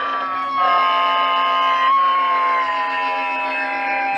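Noise-music performance: a loud, sustained electronic drone of several pitches sliding slowly downward like a siren, over a steady low hum. A new layer comes in about half a second in, and there is a jolt about two seconds in.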